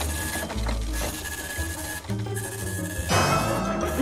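Printer running as it prints a page, a steady mechanical whir with a couple of short breaks.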